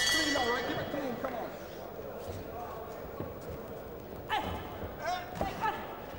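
Boxing ring bell ringing to start the round, its metallic ring fading away about a second in. Shouted voices from ringside follow a few seconds later.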